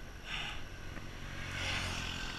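A motor scooter's small engine humming louder as it approaches and passes in the opposite lane, loudest near the end. Over it comes a cyclist's heavy breathing, a hard breath about every second and a half from the effort of climbing uphill.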